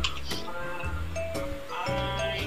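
Acoustic guitar strummed lightly a few times, its chords ringing on between the strokes.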